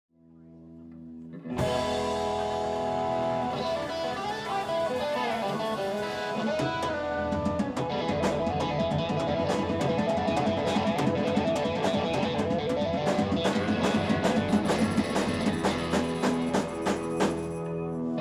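Live band playing an instrumental intro on electric guitars, bass and drums: a held chord swells up, the full band comes in sharply about a second and a half in with sliding guitar lines, and a steady drum beat joins about seven seconds in.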